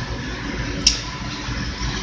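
Boiler-room equipment running: a steady low hum with an even hiss over it, and one sharp click just under a second in.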